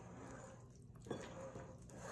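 Wooden spoon stirring thick chocolate cake batter in a glass bowl, faint.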